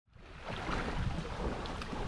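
Wind rushing over the microphone, fading in from silence within the first half second.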